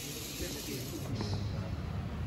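Steady hiss in a large workshop hall, thinning out about a second in, over a low rumble and faint distant voices.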